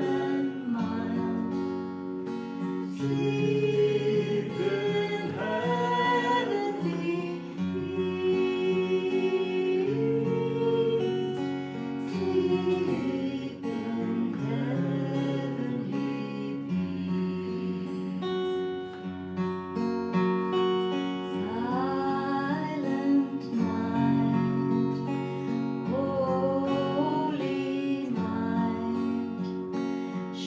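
A woman singing a Christmas carol to two acoustic guitars, strummed and picked in a slow, gentle accompaniment.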